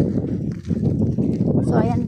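Wind rumbling on a phone microphone during a walk, with irregular footsteps on the dirt and pavement; a voice starts near the end.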